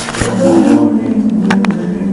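Indistinct voices, with two sharp clicks close together about one and a half seconds in.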